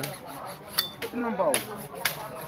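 People talking in the background, with a few sharp metallic clinks; one rings briefly just under a second in.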